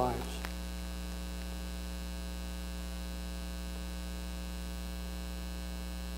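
Steady electrical mains hum: a low buzz with a ladder of higher overtones, at an unchanging level.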